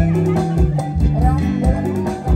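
Khmer dance music played over a loudspeaker, with a steady beat under a bending melody line.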